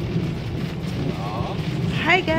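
Steady low rumble of a car driving on a wet road, heard inside the cabin, with rain on the windshield.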